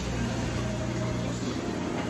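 Steady background noise: a low, even hum under a broad hiss, like a running fan or motor in a room.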